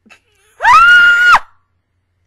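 A single high-pitched scream, very loud. It rises sharply at the start, is held for under a second, then drops and cuts off.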